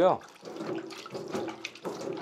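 A hand splashing and stirring water in a tub used for soaking whetstones.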